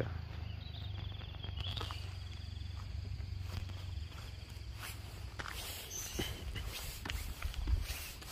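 Footsteps on a gravel and dirt road shoulder, with scattered irregular crunches and rustles over a steady low hum.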